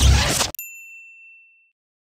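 The closing theme music cuts off abruptly about half a second in. It leaves a single bright ding that rings out and fades over about a second.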